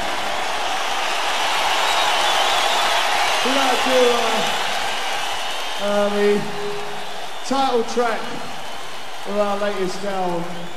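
Arena concert crowd noise between songs: a steady wash of cheering and applause. A man's voice breaks in briefly over it several times, from about three and a half seconds in.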